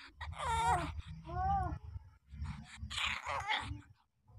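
Week-old puppies whimpering: a long cry that wavers in pitch, a shorter cry that rises and falls, then a rougher, noisier cry near the end.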